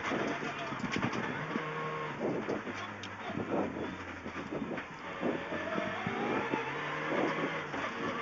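Rally car engine running hard on a gravel road, heard inside the cabin, its note stepping up and down through gear changes over steady tyre and gravel noise.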